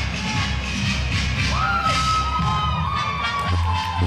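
Paso doble dance music with a steady beat, with spectators cheering and calling out over it from about a second and a half in.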